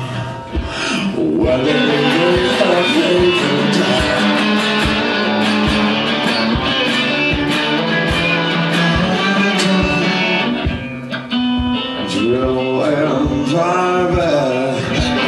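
Live solo blues-rock on a metal-bodied resonator guitar, played hard with a steady low beat underneath. A man sings over it in the first few seconds and again near the end. The playing thins briefly a few seconds before the end.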